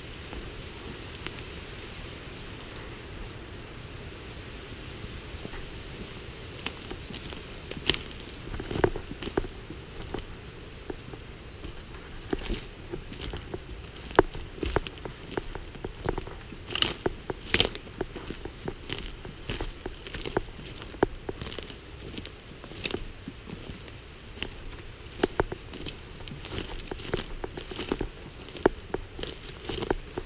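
Footsteps crunching on the pine-wood floor litter, with irregular crackles and snaps, more frequent and louder in the second half.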